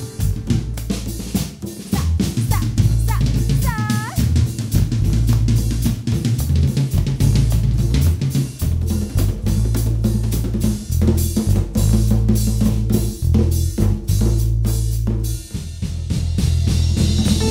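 Live band playing an instrumental passage of a cumbia-rock fusion: a drum kit with kick, snare and hi-hat driving the beat over electric bass, with electric guitar and keyboard, and no vocals. A short bending note sounds about four seconds in.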